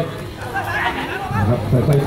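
A man commentating in Thai, with other voices chattering in the background during a pause in his speech.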